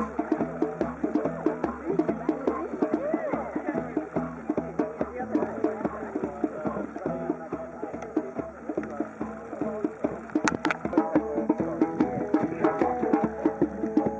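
Hand drum played in a fast, steady rhythm, with other music and voices over it.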